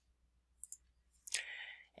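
Faint computer mouse clicks: a quick double click a little over half a second in, then another click about 1.3 s in, followed by a short soft noise.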